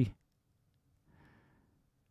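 A man's speech trails off, then near silence with one faint exhale about a second in.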